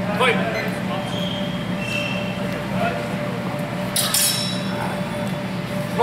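Steel longsword blades clashing in sparring: one sharp metallic clash about four seconds in that rings on briefly.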